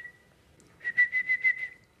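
High whistle held on one pitch: a short note, then about a second in a run of quick pulses on the same note, about six a second. It is an attention-getting sound aimed at a baby during a vision test.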